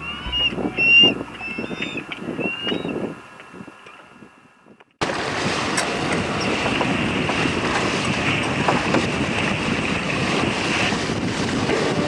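Music fades out over the first few seconds, then a brief gap. From about five seconds in comes a steady rush of wind on the microphone and water running past a sailing yacht's hull as it moves under way.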